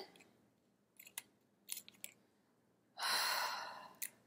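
A few faint clicks, then a long audible breath out, a sigh about three seconds in that fades away over nearly a second.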